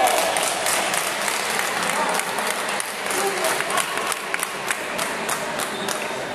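Spectators clapping after a table tennis rally: a dense run of handclaps that thins out to scattered claps toward the end, with some voices underneath.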